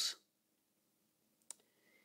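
Near silence, broken by a single short click about one and a half seconds in.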